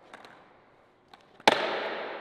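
A skateboard slaps down hard on a concrete floor once, about a second and a half in: a single sharp crack that rings on briefly in the hall. Before it there are only a few faint taps.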